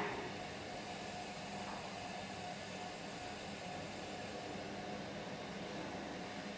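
Electric potter's wheel running with a steady, even hum while wet clay is centred on the spinning wheel head.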